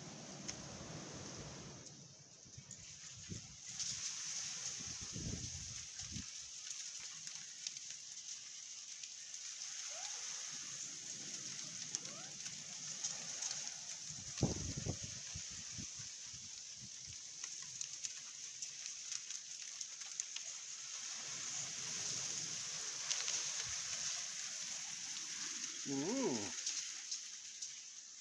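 Hailstones falling and pattering on the paving and ground: a dense, steady hiss of countless small ticks that thickens about three seconds in.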